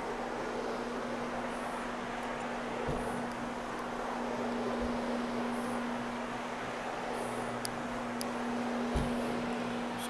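Rotary low-moisture carpet-cleaning machine running, its microfibre pad scrubbing a commercial loop olefin carpet. The motor gives a steady hum on one constant tone, with a few faint low knocks.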